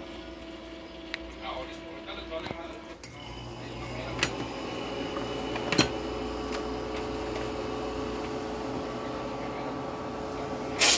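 Faint television sound with voices, which gives way about three seconds in, as the set switches to a blank channel, to a steady electrical hum with a held tone. Two sharp clicks come a second or two later.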